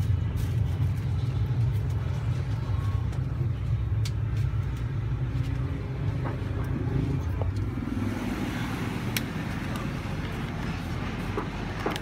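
Steady low rumble of road traffic, with a few light clicks scattered through it.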